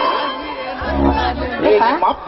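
Actors' voices through a stage microphone and loudspeaker system, with music playing underneath in a large hall.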